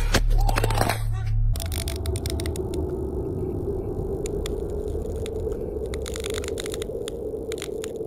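Sound design for a title card: a low hum that switches, about a second and a half in, to a steady crackling hiss full of irregular clicks, like old-film or electrical static.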